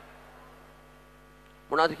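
Steady, faint electrical mains hum in a break between phrases, with a man's voice starting up again near the end.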